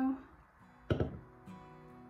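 A drink can's ring-pull snapping open once, sharply, about a second in, as quiet guitar music starts playing underneath.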